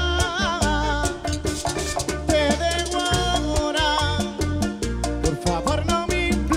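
Live bachata band music, loud and continuous: a wavering melodic lead line over a steady bass and an even percussion beat.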